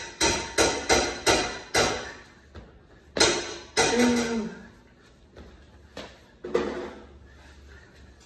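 Hands and feet striking a hardwood floor during burpee-style push-ups: a quick run of about six thuds, about three a second, in the first two seconds, a heavier thud just after three seconds as he jumps up to standing, then a few more thuds as he drops back down near the end.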